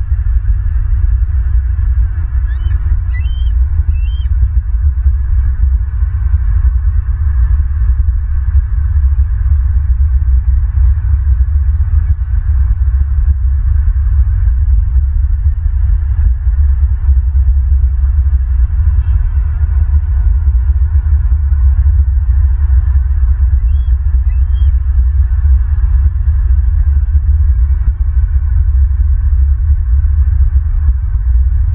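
Steady low rumble of wind buffeting an outdoor camera microphone. A bird gives a few short, high chirping calls about two to four seconds in, and again near the end.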